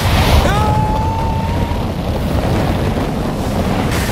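Loud wind rushing past skydivers in freefall just after leaving the plane. About half a second in, one long high cry rises and then holds for just over a second.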